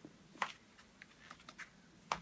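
Faint, irregular clicks and taps from a handheld phone camera being handled, the sharpest about half a second in.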